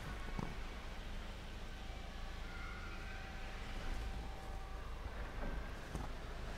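Four-panel aluminium slide-and-turn door panels rolling along their track, a faint steady rolling sound with a light knock just after the start and another near the end. The panels run very lightly.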